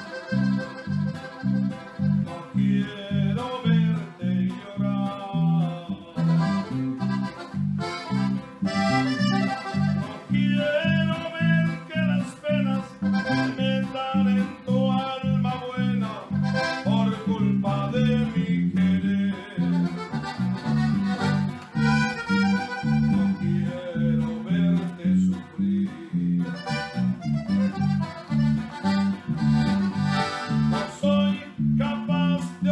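Button accordion and bajo sexto playing a norteño song: the accordion carries the melody over the bajo sexto's steady strummed rhythm of alternating bass notes and chords.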